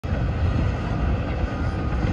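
Wind buffeting the microphone: a dense, fluttering low rumble with a fainter hiss above it.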